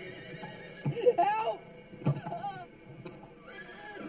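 A horse whinnying: a loud, quavering call about a second in, then shorter calls around two seconds and again near the end.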